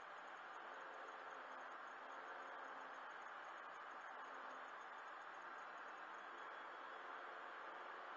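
Faint, steady road and tyre noise inside a car cruising on a freeway, heard through the windscreen-mounted dashcam's microphone.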